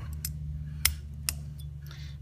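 Three small, sharp clicks as the actuators in a Ruger American pistol's sear housing are worked by hand, the loudest a little under a second in, over a steady low hum.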